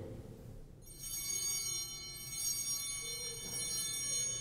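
Altar bells rung at the elevation of the host after the consecration, coming in just under a second in as a cluster of high ringing tones that swell a few times and keep sounding.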